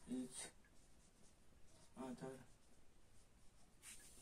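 Faint strokes of a marker pen writing on a whiteboard, with two brief murmured words from the writer as he dictates what he writes, one at the start and one about two seconds in.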